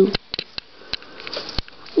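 A Schnorkie (schnauzer–Yorkie mix) sniffing right at the microphone, with scattered small clicks and taps.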